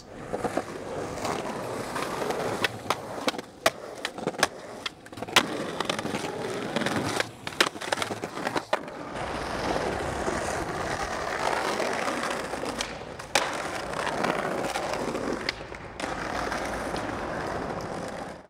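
Skateboard wheels rolling on concrete, broken by many sharp clacks of the board in the first half and a steadier roll with only a couple of clacks in the second half.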